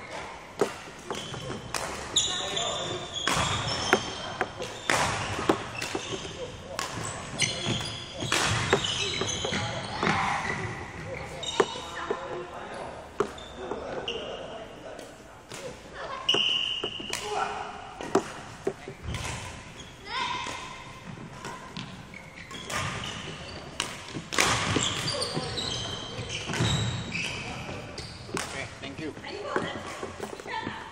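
A badminton footwork and feeding drill in a large hall: repeated sharp impacts every second or two, from shuttles being struck and feet landing on the wooden court, with short high squeaks of court shoes. Everything echoes around the hall.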